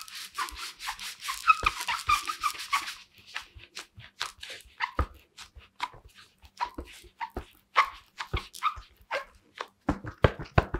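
Latex palms of goalkeeper gloves squeaking and rubbing against a football as the hands grip and turn it. A dense run of rubbing with high squeaks fills the first three seconds, then comes a string of short, irregular squeaks and scuffs.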